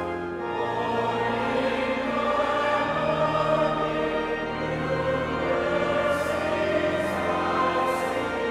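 Background choral music: a choir singing slow, long-held notes.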